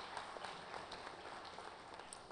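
Audience applauding: a patter of many claps that slowly dies down.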